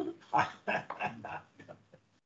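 A short burst of people laughing: a few breathy, pitched pulses that fade away.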